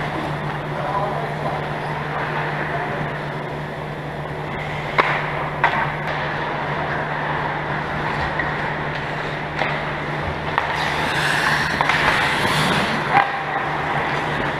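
Ice hockey play on a rink: skate blades scraping the ice, with sharp clacks of sticks and puck, two of them about five seconds in, over a steady low hum. The skate scraping grows louder and closer near the end as players skate in around the net.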